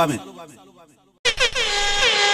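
The tail of a DJ's voice drop fades out, and after a short gap, a little over a second in, a DJ air-horn sound effect starts suddenly: a loud steady horn tone that dips slightly in pitch as it begins.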